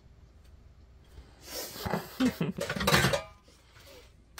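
A person laughing in breathy giggles for about two seconds, starting about a second and a half in.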